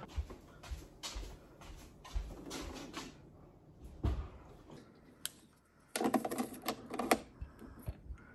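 Light clicks, taps and knocks of hands handling plugs, cords and a portable power station, with a quick run of clicking about six seconds in.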